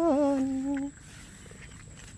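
A woman singing, holding the last note of a phrase as a hum. Its pitch steps down and it stops about a second in, leaving only faint background noise.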